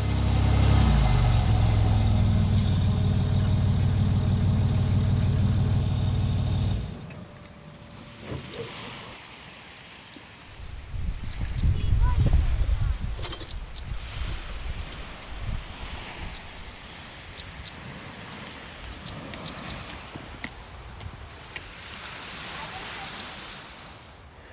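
The Land Rover Discovery 3's TDV6 diesel engine runs steadily, rising in pitch just after the start, and cuts off after about seven seconds. After that it is much quieter outdoors: a small bird gives short high chirps about once a second, with a few light clicks.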